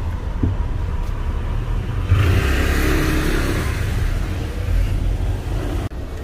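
Car engine and road rumble heard from inside the cabin as the car drives up a parking-garage ramp, growing louder with added road hiss from about two seconds in.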